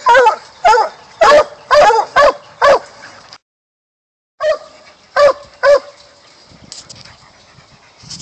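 Young black and tan coonhound barking at a caged raccoon: a run of sharp barks about every half second, a brief dropout of about a second, then three more barks before it goes quieter.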